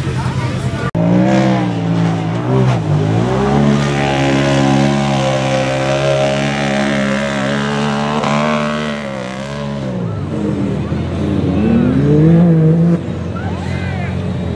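Side-by-side UTV engine revving hard as the buggy ploughs through a mud pit. The pitch dips, climbs and holds high for several seconds, drops off about ten seconds in, then rises again in shorter revs near the end.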